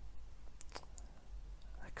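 A few faint clicks in a speech pause, some in quick succession about two-thirds of a second in and another at about a second, over a low steady hum.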